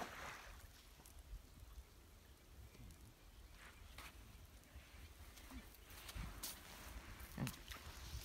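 Near silence outdoors: a faint low rumble with a few soft, scattered clicks.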